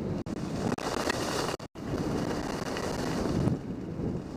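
Wind rushing over the microphone of a skier's camera during a fast run down a groomed slope, mixed with the hiss of skis on packed snow. The sound cuts out briefly twice, about a quarter second in and just before the middle.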